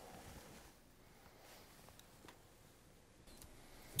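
Near silence: room tone, with a couple of faint ticks about halfway through.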